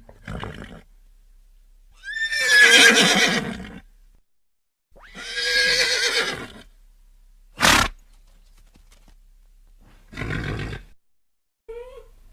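Horse whinnying: two long, wavering neighs of about two seconds each, then a short sharp sound and a shorter, breathy, noisy one near the end.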